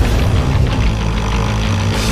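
Dirt bike engine running at speed under loud, driving music.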